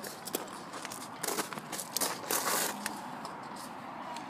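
Close handling noise from a hand gripping the phone and a sheet of paper: rustling and crackling with scattered clicks, and louder rustling bursts about a second in and again just after two seconds.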